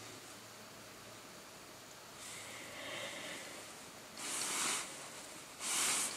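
A person breathing audibly in a small quiet space, three breaths about a second and a half apart in the second half, over faint background hiss.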